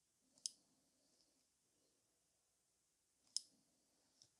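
Near silence with two light, sharp clicks, one about half a second in and one near the end. These are handling sounds of long artificial nails and a nail-art brush tapping against the paint palette and nail tips while painting.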